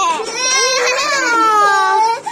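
A young child's voice holding one long drawn-out note that dips slightly and then rises in pitch, like a playful wail.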